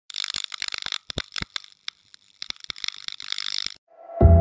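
Channel logo intro sound effect made of rapid crackles and clicks. It is dense at first, thins out in the middle, builds again, and cuts off suddenly near the end.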